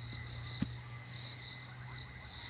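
Crickets or similar insects chirping in a steady, high pulsing rhythm. A single sharp click cuts in about half a second in.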